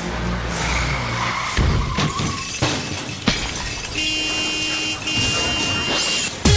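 Car sound effects laid over the opening of a dance track: a car engine and skidding tyres, with several sharp crashes between about one and a half and three and a half seconds in, then two long held tones near the end.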